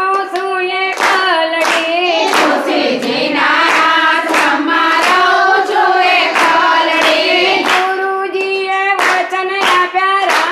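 A group of women singing a Gujarati devotional bhajan in unison, keeping time with steady hand claps about every three quarters of a second.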